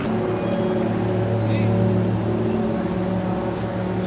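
Steady low mechanical hum, a pitched drone with a deep fundamental and several overtones, of outdoor city background. A brief high falling chirp about a second and a half in.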